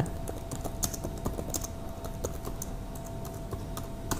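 Typing on a computer keyboard: irregular key clicks, over a faint steady hum.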